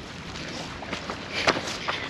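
Footsteps of a person on foot across rough ground, with a few sharp clicks, the loudest about one and a half seconds in.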